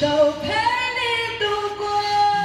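A vocalist singing a line with little accompaniment and no drums: the voice bends and slides for about a second and a half, then settles into a steadier held note.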